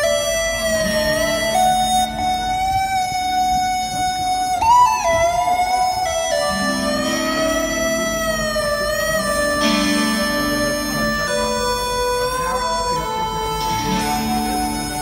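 Live rock band playing an instrumental introduction: a long sustained lead melody that bends and glides between notes over held chords.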